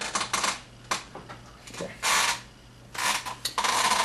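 Steel woodcarving tools clinking and rattling in a few short bursts as a hand sorts through them to fetch a gouge, over a steady low hum.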